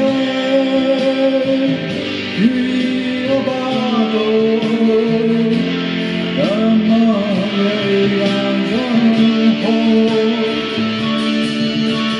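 Zemaitis V-shaped electric guitar playing a melodic rock lead line, with sustained notes, bends and slides, over other guitar parts.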